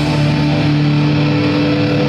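Rock band playing live, holding long sustained notes on electric guitars, bass and keyboards, with no cymbals sounding.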